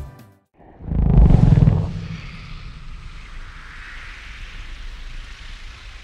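Film sound design: a loud, deep boom about a second in, easing into a steady airy hiss that holds to the end.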